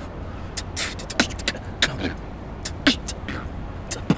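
Human beatboxing: a rhythm of sharp mouth-made snare and hi-hat clicks, some with a quick falling pitch sweep, over a steady low rumble.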